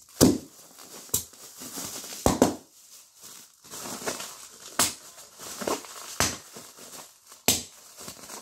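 Air-filled plastic packing bags being crushed by hand and popping: a series of sharp pops, roughly one a second, with plastic crinkling between them.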